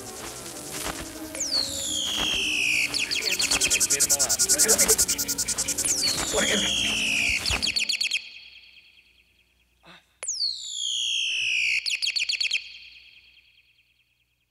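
A bird-like whistled call, sounding three times at even intervals. Each call slides steeply down from a high pitch and breaks into a fast, rattling trill. A murky layer of other sound lies under the first two calls, and there is a single sharp click just before the third.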